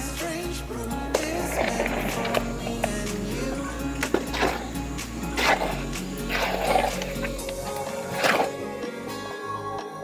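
Wet concrete mix scraping and slopping out of a tipped plastic mortar tub into a hole, in several short surges. Background music plays throughout.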